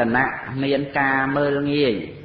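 A man's voice in chant-like recitation, drawing out syllables on a steady pitch, with one long held note that falls away near the end.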